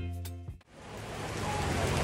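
Background music ending about half a second in, then the noise of hard rain fading up.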